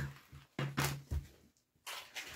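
A vacuum-packed ham being handled and set down on a table among other groceries: a few short knocks and packaging rustles in the first second and a half.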